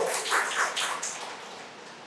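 A pause in a man's speech: faint hissing room noise through the microphone, fading steadily.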